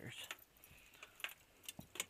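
A few small, sharp metallic clicks and clinks as metal gear such as trap chain and wire cutters is handled.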